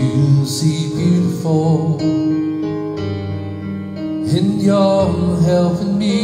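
A man singing a slow worship song over sustained keyboard chords. There are two sung phrases, the second beginning a little after four seconds in.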